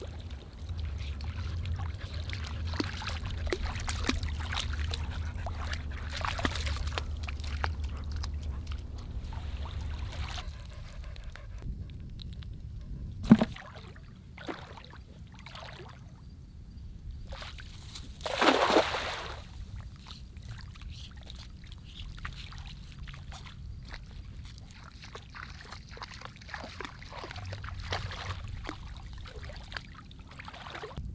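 Shallow lake water sloshing and splashing around a person wading and working a cast net. A little past the middle comes one louder splash lasting about a second, the thrown net landing on the water, then lighter sloshing and dripping as it is hauled in.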